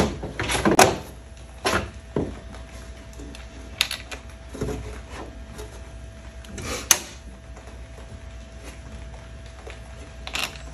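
Scattered knocks and clicks from handling wiring parts: a fuse block is set down beside a boat battery and cable ends are moved about. The sharpest knock comes about seven seconds in, over a faint steady hum.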